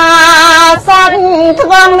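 A woman's solo voice chanting Khmer smot, the melodic recitation of Buddhist verse, in long held notes that waver slightly, with a short break for breath just under a second in.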